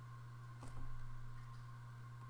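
Quiet room tone with a steady low electrical hum, and a faint soft sound a little over half a second in.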